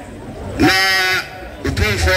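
A man chanting into a microphone: one long, steady held call in the first half, then quick repeated syllables near the end.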